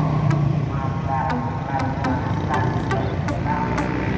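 Motorcycle engine rumble passing close by over steady road traffic, loudest in the first moments and then easing off. Music with a regular beat plays underneath.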